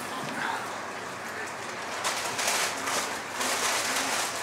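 Paper rustling and crinkling as sheets of wrapping paper are handled, louder in bursts from about halfway through, over a steady hiss.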